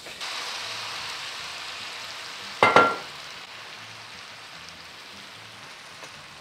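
Dry vermouth hitting a hot cast-iron skillet of browned mushrooms: a loud sizzle right away that eases to a steadier, quieter sizzle as the wine boils, the start of deglazing the pan. A single sharp clink with a short ring comes a little before halfway.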